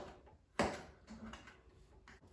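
Kitchen knife knocking on a cutting board as broccoli is cut: one sharp knock about half a second in, then a few fainter taps.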